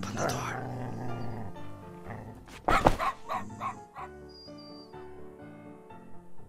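A small dog barking several times in quick succession, the loudest bark about three seconds in, over background music with held notes.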